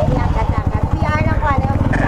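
Motorcycle engine running close by, its exhaust pulsing rapidly and steadily, with voices over it.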